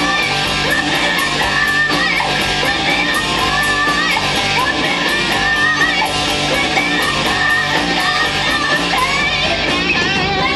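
Live rock band playing: distorted electric guitars and drums with cymbals keeping a steady beat, and a woman singing lead over them.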